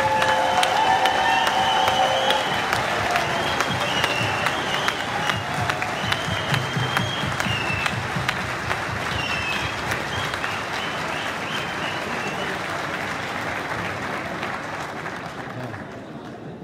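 Large audience applauding, dense clapping with high wavering cries over it, the applause slowly dying down toward the end.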